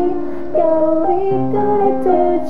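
Piano accompaniment with a woman singing a sustained melodic line that slides between notes.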